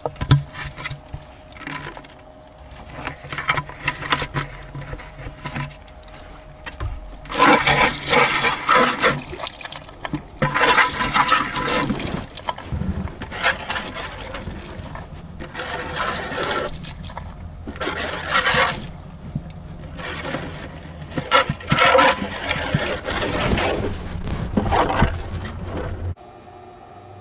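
Muddy water and ore slurry pouring from a pan into a bucket, splashing in several separate gushes over a steady low hum.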